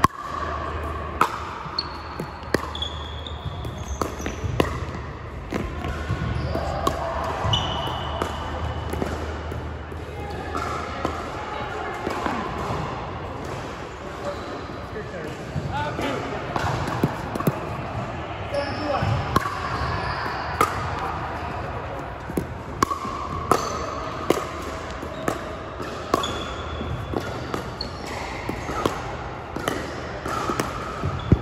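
Pickleball play: hard paddles popping against plastic pickleballs again and again, with the sharp hits ringing in a large indoor hall. Short high squeaks, typical of sneakers on the hardwood court, come in between.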